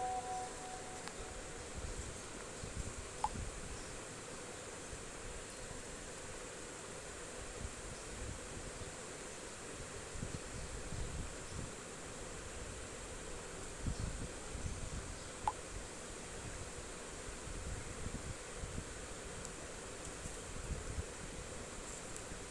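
Faint steady background hiss with low rumbles from the microphone, broken twice by a short pop about 3 seconds in and again about 15 seconds in: WhatsApp's message-sent sound as two chat messages go out.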